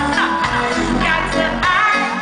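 Live reggae band playing loud with a woman singing lead into a microphone, her voice sliding between notes over a deep bass line.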